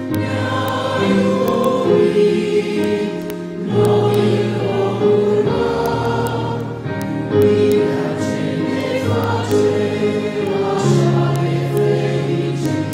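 Congregation singing a hymn together, slowly, in long held notes.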